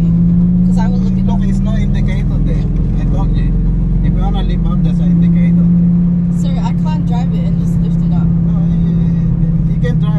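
Lamborghini engine droning steadily, heard from inside the cabin while driving, with a brief shift in pitch about halfway through.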